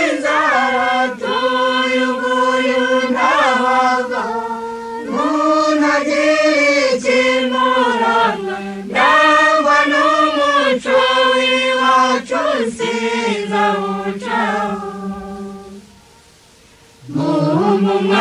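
Choir singing a Rwandan song in Kinyarwanda, the voices holding long notes. The singing drops away briefly near the end, then the next verse begins.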